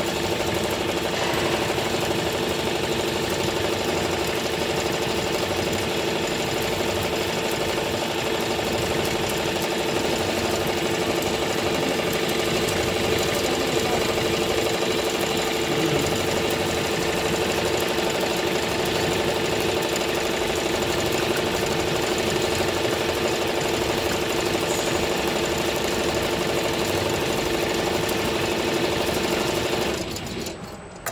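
Richpeace multi-needle cap embroidery machine stitching a design onto a cap, running steadily with a rapid, even stitching rhythm over a steady mechanical hum.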